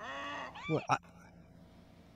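Speech only: a man drawing out a hesitant "Well, I" in the first second, then a low steady background.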